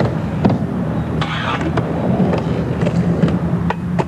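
Skateboard wheels rolling on a vert ramp, a steady low rumble, with several sharp clacks of the board hitting the ramp and coping.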